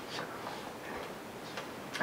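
Paper banknotes being counted by hand, a few faint soft ticks and rustles of the notes.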